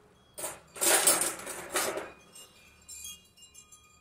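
Metal cutlery rattling and clinking as a fork is fetched, with three loud bursts in the first two seconds, then a few light clinks that ring on briefly.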